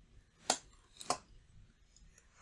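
Three short, sharp clicks from a computer mouse and keyboard: one about half a second in, then two close together about a second in, made while entering the angle for a CAD revolve cut.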